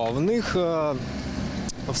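Road traffic noise under a man's voice. The voice sounds in the first second, and the traffic noise is left on its own after that.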